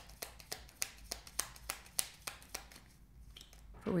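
A deck of tarot cards being shuffled by hand: a run of quick, irregular clicks and slaps of card edges, thinning out about three seconds in.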